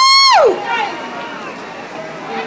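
A spectator's high-pitched whoop, held briefly and dropping steeply in pitch as it ends about half a second in, followed by faint crowd voices.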